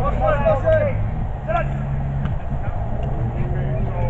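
Voices of players and onlookers calling out during a play in an outdoor football game, over a steady low hum.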